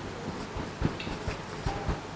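Pen or stylus writing on the glass of an interactive display: a run of light taps and short scratching strokes.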